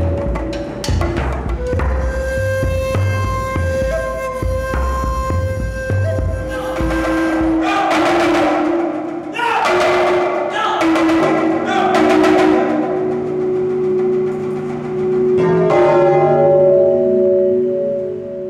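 Percussion music: a low drum roll under held tones for the first several seconds, then a handful of strikes on large hanging gongs, each leaving a long ringing chord of several tones.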